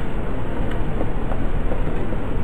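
Steady, loud rumbling noise, heaviest in the low bass, with a few faint ticks over it.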